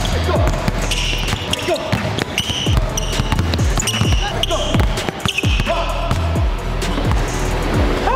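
Basketballs dribbled on a hardwood gym floor: quick, repeated, uneven bounces from several balls at once, over background music and voices.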